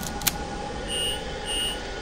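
Handheld electronic scanner beeping: a click, then short, even high-pitched beeps about two-thirds of a second apart, starting about a second in.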